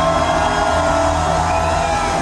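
Live band music at a concert, with a long held note over steady bass and a crowd shouting along.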